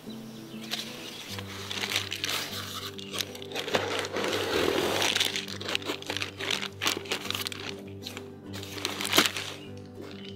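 Plastic bag crinkling and a cardboard box rustling as a bagged toy is pulled out of its packaging, thickest about halfway through, over steady background music.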